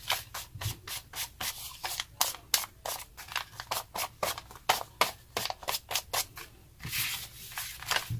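A small ink pad rubbed and dabbed against paper in quick repeated scraping strokes, about three or four a second, inking the sheet's edges, with a short lull near the end.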